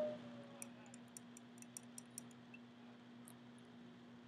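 Quiet, with a string of faint light ticks in the first half, a plastic spoon clicking against a small glass baby food jar as the food is stirred and scooped, over a steady low hum.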